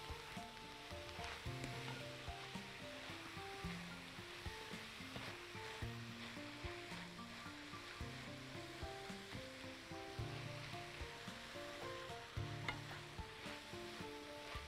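Minced meat sizzling as it browns in a frying pan, stirred with a spatula. Soft background music with a melody of short notes plays over it.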